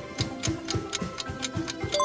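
Clock-style ticking sound effect, about four ticks a second, over background music: a quiz countdown timer running while the answer is awaited.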